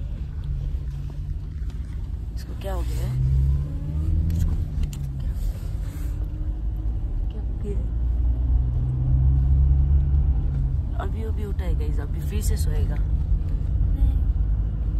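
Car interior noise while driving: a steady low engine and road rumble heard from the back seat, with the engine's drone swelling and easing twice.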